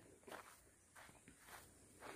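Near silence, with a few faint footsteps.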